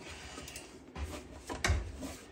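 Hard-surface handling knocks as a Soundcraft Ui24R mixer fitted with rack ears is set down into a rack case. There is a low thud about a second in, then a sharper knock a little past one and a half seconds, which is the loudest.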